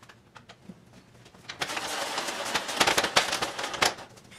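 Metal stepladder being moved: a loud rattling, scraping clatter that starts about one and a half seconds in and stops just before the end.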